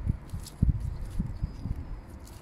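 Dull low thumps, about six in two seconds, as a freshly dug leek is tapped to shake the soil off its roots, with a faint rustle of its outer leaves being stripped from the base.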